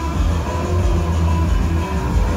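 Show soundtrack music played over loudspeakers, heavy in the bass and running steadily.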